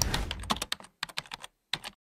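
Typing on a computer keyboard: a quick, irregular run of key clicks with a short pause near the end.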